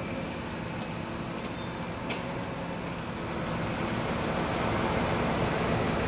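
A mobile crane's diesel engine running steadily while it hoists a bundle of steel rebar, growing louder over the last few seconds.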